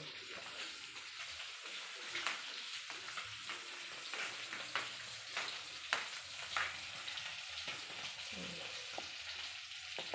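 Food frying in hot oil in a pan: a steady sizzle with frequent sharp pops and crackles.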